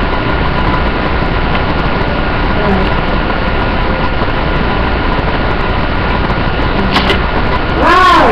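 Steady loud background hiss with a faint steady hum, and two light clicks about seven seconds in.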